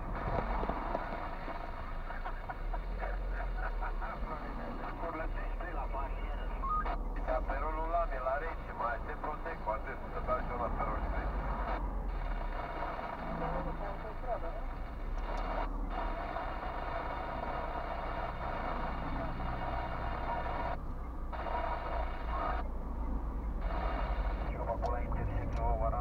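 Talking voices, sounding thin like a car radio, playing inside a moving car's cabin over a low engine and road hum.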